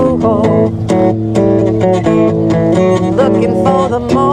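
Acoustic guitar strummed in a steady rhythm, playing a country-rock song.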